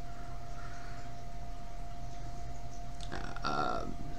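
Steady low electrical or room hum with a thin constant tone. About three seconds in, the man makes a short, throaty vocal sound lasting under a second.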